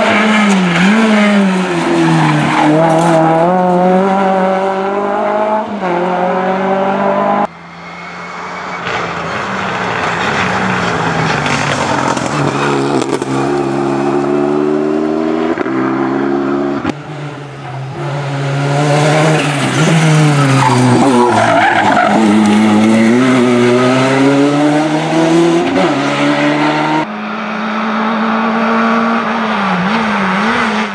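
Several rally cars taking a tarmac stage at speed, one after another, among them a Renault Mégane RS and a Citroën AX. Each engine revs hard, drops in pitch on braking and gear changes, then climbs again as the car accelerates past.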